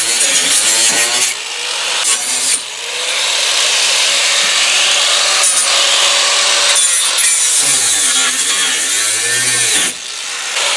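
Electric angle grinder with a cutting disc grinding through the metal rungs of an IBC tote's cage. The motor's whine sags and recovers as the disc bites, and it eases off briefly twice in the first few seconds and again just before the end.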